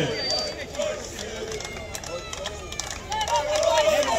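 Murmur of onlookers' voices at a lower level, with a few faint clicks; a man's voice comes in again a little past three seconds.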